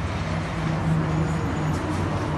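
Street traffic below, led by the steady low hum of a truck engine running as it drives along the road.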